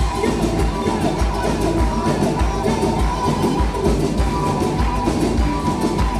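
Live band music with a steady drum beat, played on a charango, a violin, bass and percussion.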